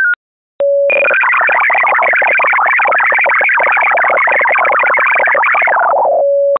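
Amateur-radio digital data-mode signal: a brief steady tone, then about five seconds of dense, rapidly shifting multi-tone data, ending in another steady tone. It opens on the tail of a short stepping tone sequence near 1500 Hz, the RSID mode-identification signal that lets decoding software switch modes automatically.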